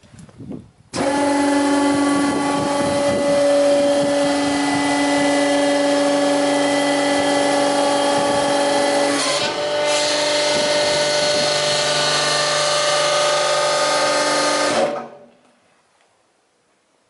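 Hydraulic pump motor of a Steinemann Triumph U90S platen press switching on about a second in and running steadily with a hum of several tones, the tone shifting about nine seconds in as the press is loaded, then shutting off near the end.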